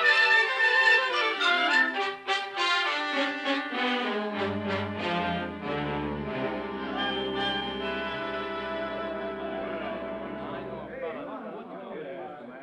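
Orchestral music bridge led by brass marking a scene change in a radio drama: short, punchy brass figures give way about four seconds in to held chords over a low bass, which fade out near the end.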